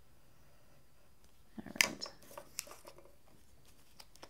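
Quiet clicks and short rustles of a craft-foam sheet and a pen-style craft knife being handled on a tabletop, starting about a second and a half in. The sharpest click comes just under two seconds in, when the knife is set down.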